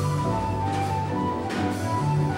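Live jazz combo playing an instrumental passage: a flute carries a melody of held notes over piano, upright bass and drums.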